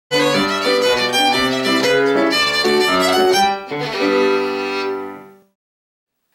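Fiddle playing a quick tune over lower accompanying notes, ending on a held chord that rings out and fades away about five and a half seconds in.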